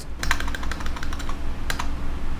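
Quick keystrokes on a computer keyboard as a search term is typed, deleted and typed again, over a steady low hum.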